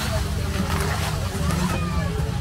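Street ambience with people talking nearby over the splashing of fountain water jets and a steady low rumble.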